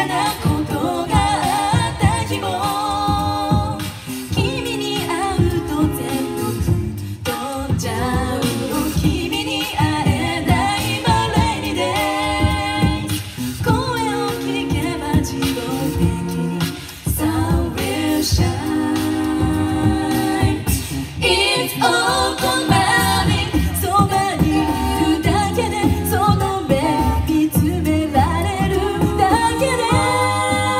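A mixed-voice a cappella group of six singing a pop song live through microphones: a lead voice over close backing harmonies, with vocal percussion keeping a steady beat underneath.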